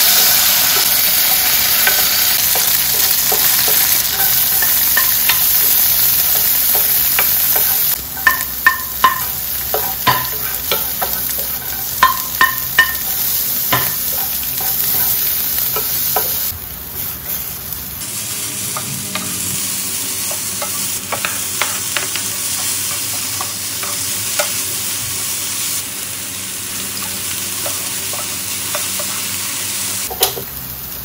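Cubed tofu sizzling as it fries in oil in a ceramic-coated frying pan. From about eight seconds in, a wooden spoon stirs it and knocks sharply against the pan several times. Later, stir-fried vegetables sizzle more quietly under the stirring spoon, with a few lighter knocks.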